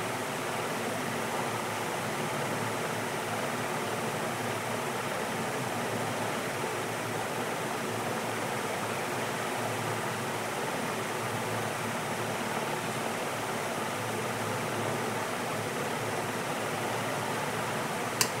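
Steady rushing of aquarium water, the constant flow and bubbling of a tank's filter or aeration, unchanging throughout.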